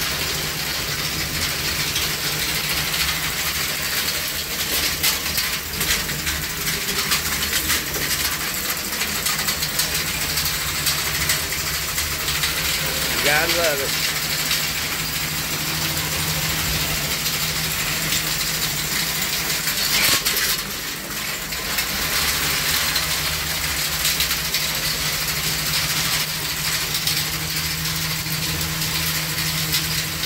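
Bale elevator running: a steady motor hum with continual rattling and clicking from its chain. A brief wavering, whistle-like tone about halfway through.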